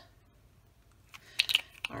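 A few quick clicks and rattles from handling a small dropper bottle of alcohol ink and its cap, starting about a second in.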